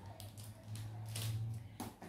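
Light rustling and tapping of plastic packaging and cellophane as items are handled in a wrapped gift basket, several short soft rustles, over a faint low hum.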